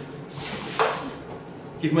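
A brief knock and scrape of a ceramic plate being handled on a stainless steel worktable, just under a second in, over quiet room noise.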